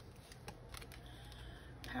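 Oracle cards being picked up and handled: a few faint clicks and slides of card over a low steady hum.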